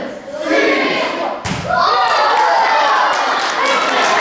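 A basketball dropped from shoulder height lands on a gym floor with a single thud about a second and a half in, followed by many children's voices calling out.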